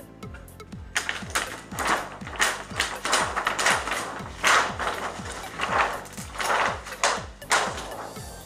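Large plastic backlight reflector sheet of an LCD TV crackling and rustling in irregular bursts as it is peeled off the panel, over background music with a steady electronic beat.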